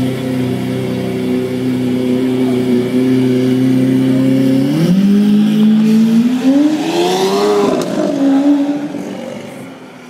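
Lamborghini Aventador LP700-4's V12 engine pulling away at low revs with a steady rumble. About five seconds in, the pitch steps up and then rises as the car accelerates, peaking around seven and a half seconds. It then drops and fades as the car drives off near the end.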